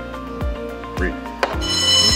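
Background music with a steady beat, about two beats a second; a set of steady high tones comes in near the end.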